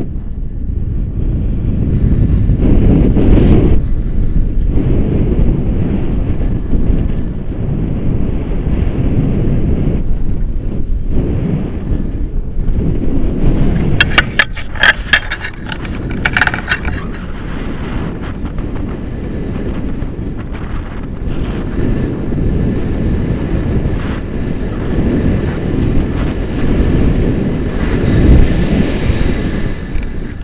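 Airflow buffeting an action camera's microphone in flight under a tandem paraglider: a loud low wind rumble that swells and fades. A quick cluster of sharp clicks comes about two thirds of the way through.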